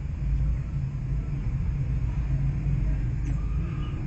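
A steady low hum and rumble with no speech.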